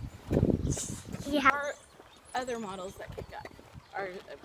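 Young children's voices talking in short bursts, with wind buffeting the microphone as a low rumble in the first second.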